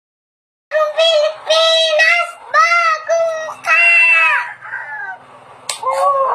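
Silence at first, then about a second in a young child's high-pitched voice in a string of about six long, arching cries or sung notes, with a sharp click near the end.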